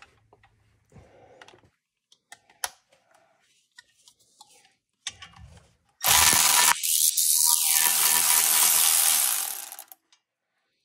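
Light clicks and clatter of tools being handled, then about six seconds in a cordless power tool runs steadily for about four seconds, spinning a brake caliper mounting bolt out of its socket.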